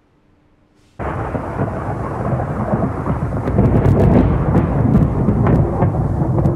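Thunderstorm: rain with a continuous low rumble of thunder, starting abruptly about a second in, with sharp crackles in the second half.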